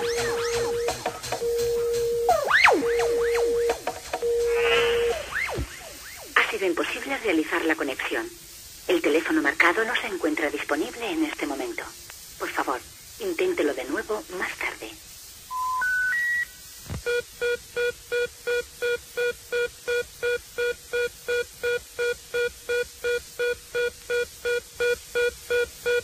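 Telephone sounds sampled into a dance-music break. Repeated steady beeps give way to a voice for several seconds, then three quick rising tones like an operator's intercept signal. The break ends in a fast even busy-signal pulse, about two and a half beeps a second.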